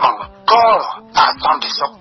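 Speech only: a man talking in Khmer in a news commentary, with a faint steady low tone beneath the voice.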